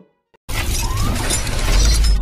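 Logo-intro sound effect: after a brief silence, a loud shattering crash about half a second in, over a deep bass rumble that swells toward the end.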